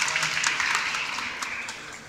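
Audience applauding, the clapping fading away over the two seconds.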